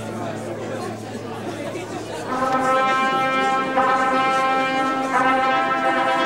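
A brass fanfare begins about two seconds in: sustained chords from trumpets, trombones and horns, changing every second or so, over a murky background for the first two seconds.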